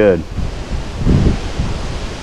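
Wind buffeting the microphone: a low, gusty rumble that swells about a second in and eases off near the end.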